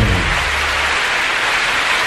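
Audience applauding steadily as the song ends, the band's last low note dying away in the first second.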